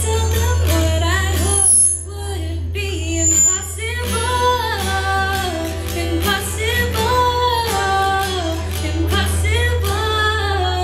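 Young women singing a song together, accompanied by a strummed acoustic guitar and amplified through a microphone, over a steady low hum.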